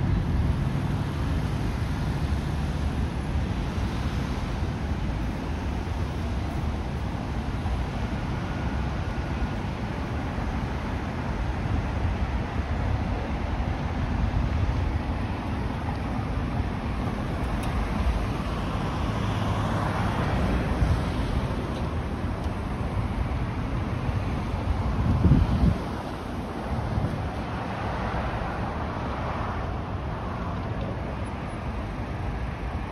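Street traffic: cars passing through an intersection, a steady hum of tyres and engines that swells as cars go by, with low wind rumble on the microphone. A brief, louder low rumble comes about five seconds before the end.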